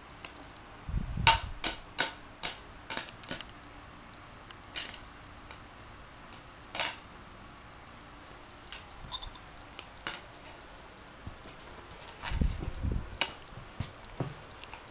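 Light taps and clicks of a small plastic plate being handled on a bed, a quick run of about six a little after the start and scattered ones later. Dull thumps come about a second in and again near the end.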